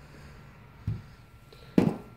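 Quiet room with one soft, dull bump about a second in, a handling noise from the laptop box and its packaging being moved.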